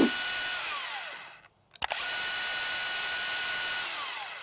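DeWalt 20V Max cordless brushless band saw running unloaded with a steady high motor whine. Soon after the start it winds down with falling pitch and goes quiet. A click follows, and it kicks back on about two seconds in, runs steadily, and starts winding down again near the end, as its switch is released and the trigger and safety paddle are pressed again.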